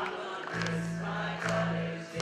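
Live band music: an electric bass guitar holding low notes that change about once a second under a keyboard, with a voice singing the melody.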